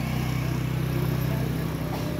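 An engine running steadily at an even speed, giving a low, unchanging hum.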